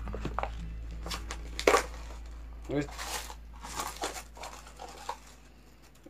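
Toy packaging being opened and handled: the crinkle and tearing of the wrapping of a blind-box toy cup, in a few separate sharp rustles, the strongest about two seconds in.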